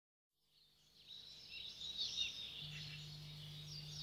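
Faint birds chirping, fading in, with a steady low hum joining a little past halfway through.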